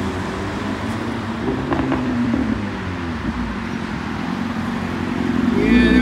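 Highway traffic passing steadily, with a motorcycle engine growing louder near the end as it rides in.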